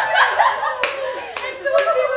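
A group of women laughing and chattering excitedly, with three sharp hand claps in the second half.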